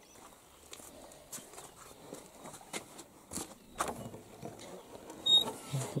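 Footsteps and handling noise as a person moves across a wooden dovecote loft: irregular light knocks and rustles, with a short high squeak near the end.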